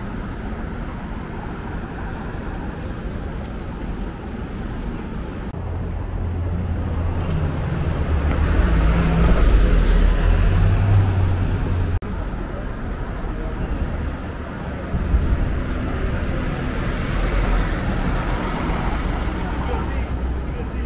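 City street traffic: a steady wash of vehicle noise with a deep rumble that grows louder about halfway through, and voices of passers-by mixed in.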